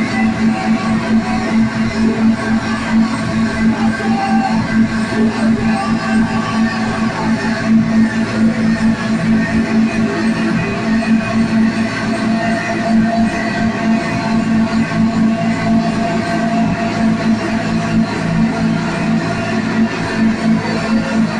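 Live band playing a loud, dense droning piece of electric guitar, bass and electronics, built on a steady low held tone.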